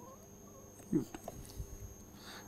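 Quiet room tone broken by one short spoken word from a man about a second in, followed by a few faint clicks.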